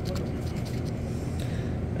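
A scratch-off lottery ticket scraped with a scratcher tool: a few faint, short scrapes over a steady low hum.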